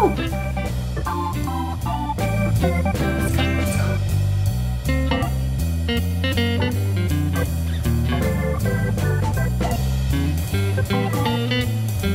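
Background music with a stepping bass line and a steady beat, with plucked and organ-like notes above.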